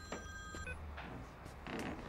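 Mobile phone ringing with a steady electronic ringtone that cuts off about two-thirds of a second in, followed by a few soft knocks and rustles.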